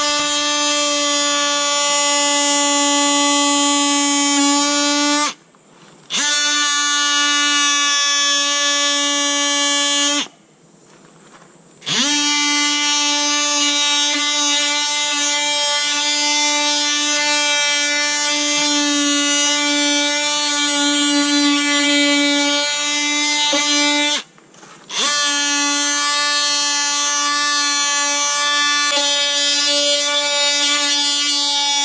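DEWALT 20V cordless oscillating multi-tool with a triangular 120-grit sanding pad, scuffing the old paint on a school bus's steel body panels dull for primer. A steady high-pitched buzz stops three times, once for about two seconds, and each time revs back up.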